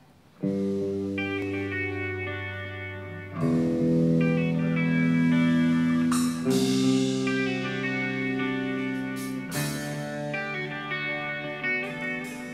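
Electric guitar chords struck and left to ring, a new chord about every three seconds, starting about half a second in.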